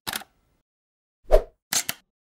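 Short sound effects of an animated logo intro: a brief click at once, a louder pop with a low thud a little over a second in, then two quick clicks near the end.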